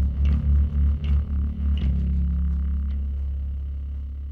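Electric bass playing quick repeated low notes along with the song, then a final note struck about two seconds in that is held and slowly fades out, with light cymbal-like ticks from the backing track above it early on.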